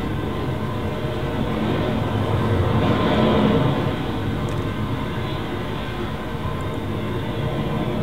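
Train-ride ambience: a steady running noise with a low rumble, swelling slightly about three seconds in.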